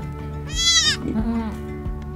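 Newborn goat kid bleating once, a short high call about half a second in, over steady background music.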